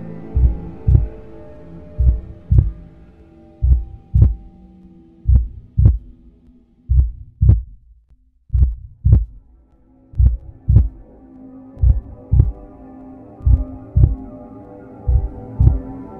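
A slow heartbeat: paired lub-dub thumps about every one and a half seconds, over a sustained low drone that fades out around the middle and comes back after about ten seconds.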